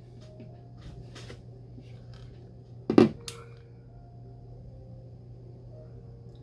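Glass wine bottles being handled in and out of a cardboard shipping box: faint clicks, then a single sharp knock with a brief ring about three seconds in, over a steady low hum.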